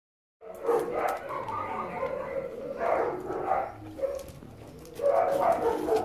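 Dogs barking and yelping in short bouts.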